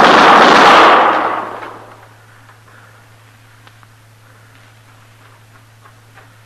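Gunfire sound effect from a 1950s radio drama: a loud gunshot blast that hangs for about a second and then dies away over the next second, leaving quiet with a steady low hum.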